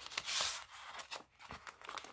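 Paper rustling as a sticker sheet is handled and slid out of a glassine album page, with a short crinkling swish about half a second in, then small taps and clicks of paper.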